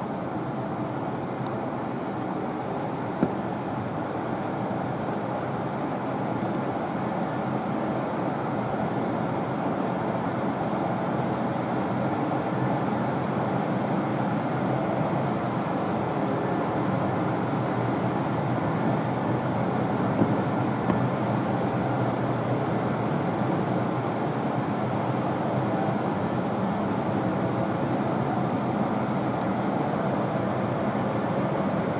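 Steady rumbling background noise of a large indoor hall, with a couple of faint brief knocks, about 3 seconds in and again around 20 seconds.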